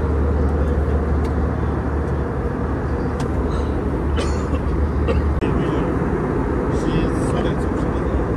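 Airliner cabin noise in flight: the jet engines and rushing airflow make a steady, loud drone with a deep hum that eases a little about five seconds in.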